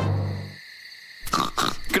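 A steady low note cuts off about half a second in. After a short quiet gap, a cartoon pig character grunts and snorts near the end.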